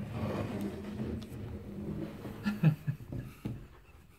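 A man laughing softly, a few short breathy chuckles about two and a half seconds in, over low room noise.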